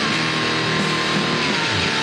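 Distorted electric guitar playing rock, a Telecaster-style guitar through an amp, with a held high note that sags slightly in pitch near the end.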